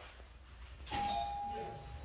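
Doorbell chime rung once about a second in: a sharp strike, then a clear two-note chime tone that holds steady for about a second.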